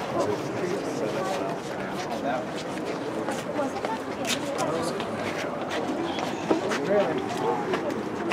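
Indistinct chatter of several people talking, with scattered light clicks and taps.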